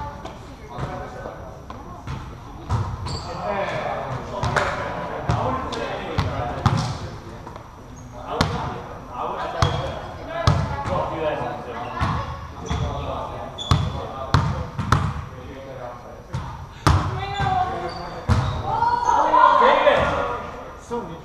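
Indoor volleyball rally: a volleyball is repeatedly hit and slapped, sharp impacts every second or two, with players' voices calling out between the hits and a louder shout near the end.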